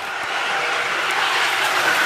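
A bobsled approaching down the concrete bobsleigh track: a steady rushing rumble that grows slowly louder as it nears.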